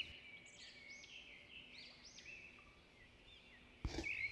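Near silence, with faint, short, high chirps from birds in the background.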